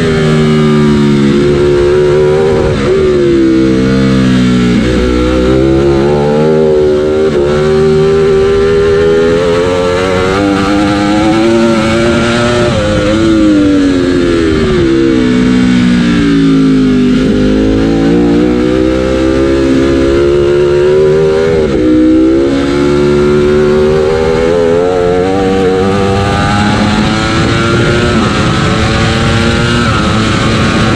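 Ducati Panigale V4 superbike engine at full race pace on track. Revs climb hard through the gears and drop sharply several times on braking and downshifts.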